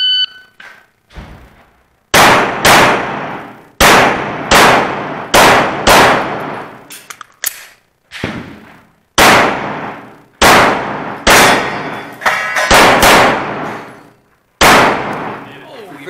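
Electronic shot timer beeping once, then a string of about fifteen pistol shots fired singly and in quick pairs, each ringing on under the range's roof.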